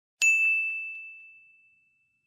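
A single bright ding, like a small bell or chime sound effect, struck once and ringing out as it fades over about a second and a half.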